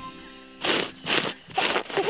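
Cartoon digging sound effect: four quick scrapes of a shovel into soil, about two a second, as the background music fades out.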